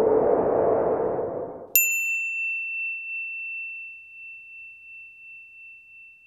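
Logo sound effect: a rushing swell of sound that fades away, then, just under two seconds in, a single bright electronic ding that rings on and slowly dies away over about four seconds.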